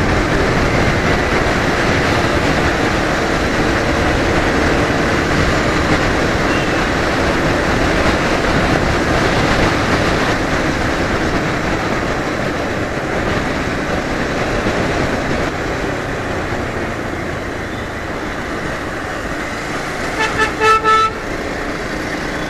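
Motorcycle riding at speed with loud, steady wind rush over the engine, easing a little as the bike slows. Near the end a horn gives a few short toots.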